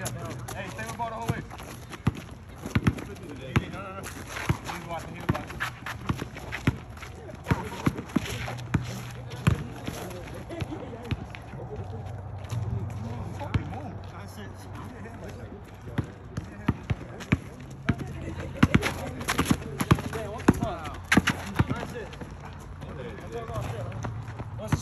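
Basketball bouncing on an outdoor asphalt court among players' running footsteps: sharp, irregular thuds, with a quick flurry of them about three quarters of the way through, over players' voices.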